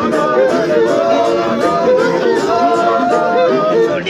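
A large group of men singing together, many voices at once.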